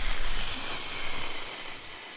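A man's long breath blown out through pursed lips into a close microphone: a breathy hiss that opens with a low pop and fades away over about three seconds.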